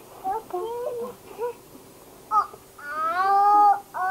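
A young child's high-pitched vocalizing: a few short squeals, then one long drawn-out call that rises and then holds, a little before the end.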